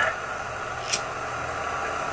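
Steady background hiss of room tone with no speech, and one brief click about a second in.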